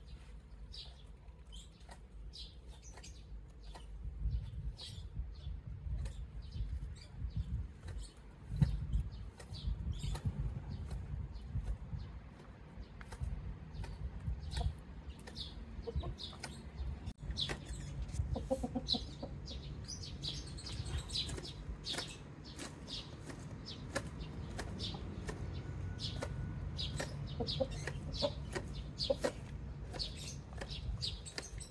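Backyard chickens foraging among garden plants, with soft clucks and short high chirps repeating all through over a low rumble. A single sharp click comes about nine seconds in.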